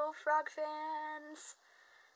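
A woman's voice drawing out its words in long, sung-out held notes, stopping about one and a half seconds in; the voice cracks, as she herself notes.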